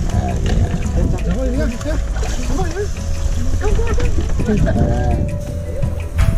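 Indistinct voices, with some music, over a steady low rumble.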